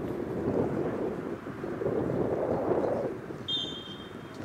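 Wind buffeting the microphone, a rough low rumble that swells in the middle. A short, steady high whistle sounds near the end.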